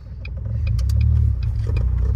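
A manual Ford car's engine picking up revs as a learner driver eases the clutch out in first gear and pulls away, heard from inside the cabin. The engine gets louder about half a second in.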